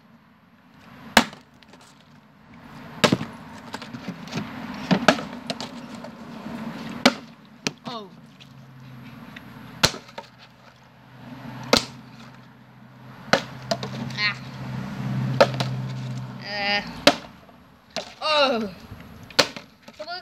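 Plastic bottles being flipped and landing on a concrete floor: a sharp knock or clatter about every two seconds, nine or so in all.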